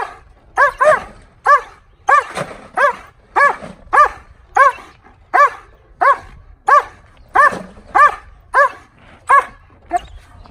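German Shepherd barking in a steady, rhythmic run of about sixteen barks, roughly one every half-second or so, each bark an arched, rising-then-falling call of the same loudness: sustained aroused barking at a stimulus during protection table work.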